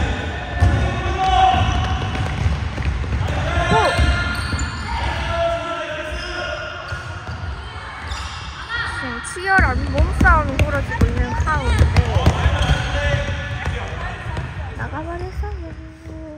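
Basketball game on an indoor hardwood court: a ball bouncing and thudding on the floor among running players, with girls' voices calling out, echoing in a large gym.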